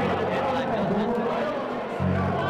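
Spectators' voices chattering and murmuring around the table, several people talking at once.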